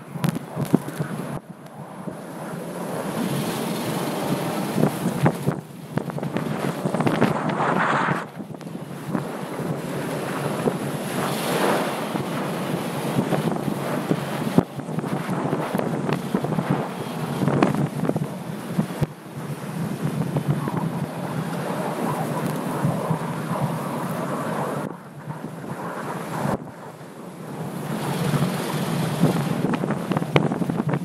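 Wind rushing over the microphone of a camera mounted on the outside of a Land Rover LR3 as it drives and slides on snow-covered ice, with tyre and snow-spray noise mixed in. The rushing swells and drops several times, with short lulls.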